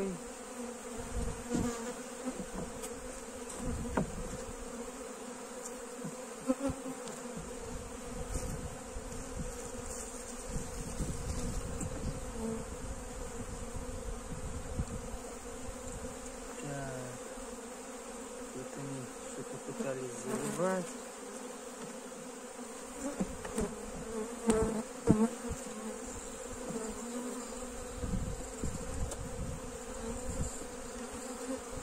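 Honeybees buzzing in a steady hum around an open hive, with single bees flying close past and their pitch sliding up and down. Scattered wooden knocks as hive frames are handled, the sharpest one near the end.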